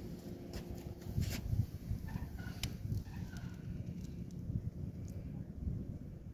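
Outdoor background: an uneven low rumble of wind on the phone microphone with some handling noise and a few clicks, and a few faint chirps near the middle.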